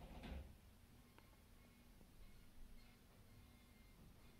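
Near silence: faint room tone with a low, steady hum that fades out near the end.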